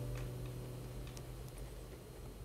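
Acoustic guitar chord ringing out and slowly fading at the end of a song, with a few faint clicks.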